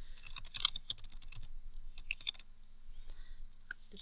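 Typing on a computer keyboard: a run of quick, irregular keystroke clicks.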